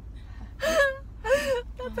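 Laughter: two short breathy bursts of women laughing, over the low steady rumble of a car cabin.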